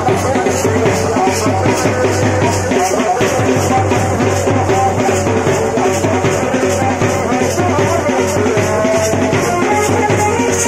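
Band baja wedding band music driven by large bass drums beating a steady, even rhythm, with a melody carried over the top.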